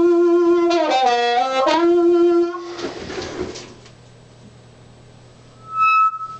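Blues harmonica amplified through a Shure Brown Bullet microphone with a CR element into an amp. One long held note dips lower for a moment and comes back, then stops after about two and a half seconds. A faint amp hum is left, and near the end a brief high feedback squeal rings out.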